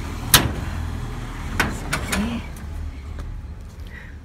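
Wrought-iron entrance gate being opened: one sharp metallic click from its lock, then two lighter clicks just over a second later as the gate comes open.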